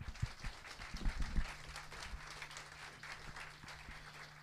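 Audience applauding: many hands clapping, loudest early on and easing off gradually, with a few low thumps in the first second and a half.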